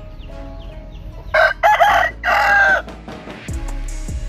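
Rooster crowing once, a loud crow in three parts starting about a second in and lasting about a second and a half.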